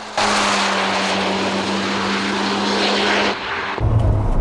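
Tuned Mazda RX-7 (FD3S) rotary engine running hard at a steady high pitch as the car goes through a fast corner, with a lot of exhaust and wind noise. Near the end the sound changes abruptly to a deep, booming rumble as heard from inside the car.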